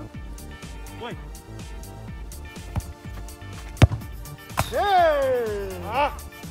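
Background music with a steady beat; a little under four seconds in, a single sharp thud of a football being kicked, followed by a man's long groan that falls in pitch.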